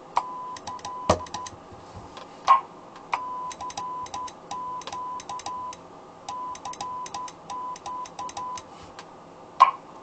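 Morse code sent on CW: a steady tone near 1 kHz keyed on and off in dots and dashes, with a sharp click at each keying. Two louder knocks come in the first few seconds, and another comes just before the end.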